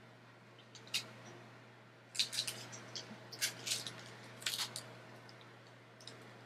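Sheets of clear plastic stamps being handled: faint scattered crinkles and clicks of the plastic in several short clusters, over a low steady hum.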